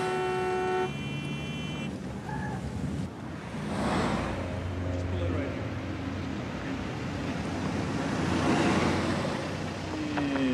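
Car horns honking as a car pulls into traffic: one horn held for about a second and a higher one for about two. Then street traffic noise follows, with cars passing about four and eight seconds in.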